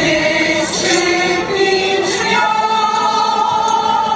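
Mixed choir of men's and women's voices singing together in harmony, moving through a few notes and then holding long sustained chords.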